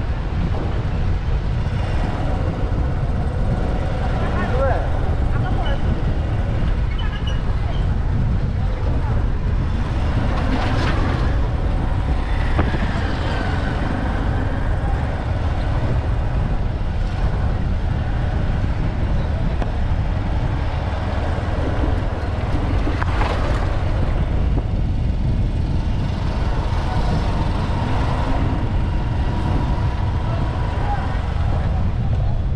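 Steady low rumble of road and engine noise from a vehicle driving slowly along a dirt street, with passing traffic and street noise around it; two brief louder swells about 11 and 23 seconds in.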